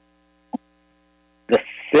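A pause in speech over a meeting's audio feed, with only a faint steady electrical hum, a very brief vocal sound about half a second in, then a voice saying "the sixth" near the end.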